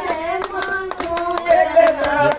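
Women clapping their hands along, about two claps a second, to a woman singing a folk song with long held notes.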